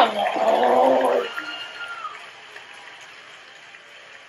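A person's loud wordless exclamation at the start, lasting about a second, then fading to a low background.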